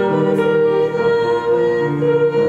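A woman singing solo, holding a long note, accompanied by a grand piano.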